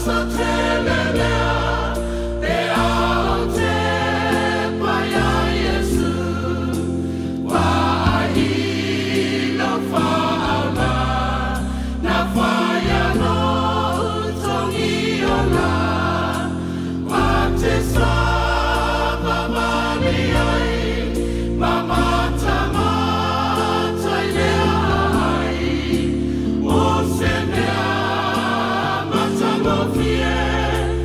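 A church choir singing a Samoan gospel hymn in harmony, phrase after phrase, over sustained low bass notes.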